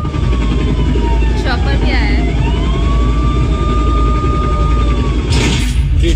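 Closing sound effects of a music video soundtrack: a deep, steady rumble under a slow siren-like wail that rises, holds and falls back twice, with a brief voice about a second and a half in.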